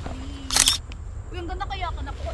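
A single camera shutter click about half a second in, as a posed photo is taken after a 'one, two, three' countdown, over a low steady rumble.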